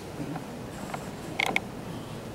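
A few faint creaks and clicks over a low room hum, with a short sharp cluster of them about one and a half seconds in, typical of people shifting on wooden furniture.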